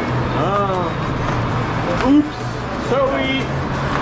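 Busy station ambience: short bursts of people's voices about half a second, two seconds and three seconds in, over a steady low hum and background noise.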